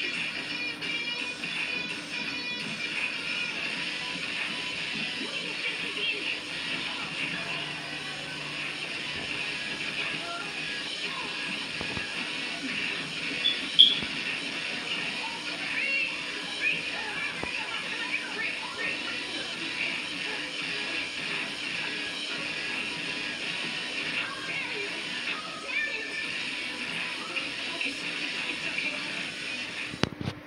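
Television audio picked up in the room: a drama's soundtrack music with voices over it, and one sudden sharp sound about fourteen seconds in.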